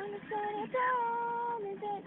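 A high-pitched voice singing a few wordless held notes, the longest lasting about a second, while fingers pull and stretch the singer's lips.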